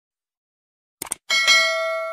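Silence, then about a second in two quick mouse clicks followed by a bell chime that rings and fades: the click-and-ding sound effect of a subscribe-button animation.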